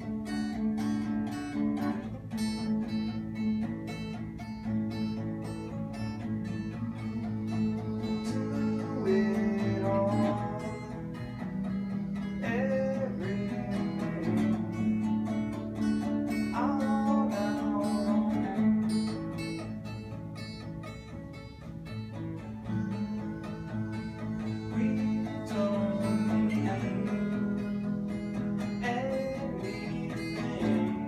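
Two acoustic guitars playing together, chords with picked notes.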